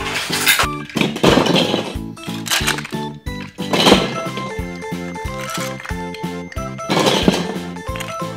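Upbeat background music with a steady beat and repeating notes, with a few short rattling noises over it.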